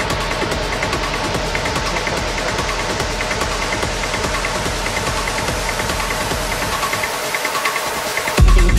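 Hard techno DJ mix playing, driven by fast, dense hi-hat and percussion hits. The bass drops away over the last second or so.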